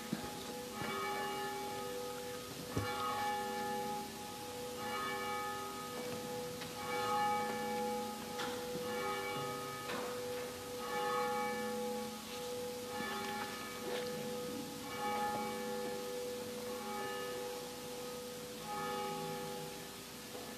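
Church bells ringing, a steady series of strokes about one a second, their ringing tones overlapping and hanging on between strokes.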